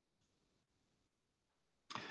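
Near silence: room tone, with a faint short noise just before the end.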